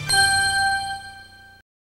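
A single bell-like ding that rings on and fades at the close of a song, then cuts off abruptly about a second and a half in.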